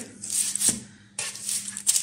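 Metal kitchen tongs scraping and rustling over parchment paper on a baking tray as roasted eggplant halves are flipped, with a couple of sharp clicks of the tongs, one near the end.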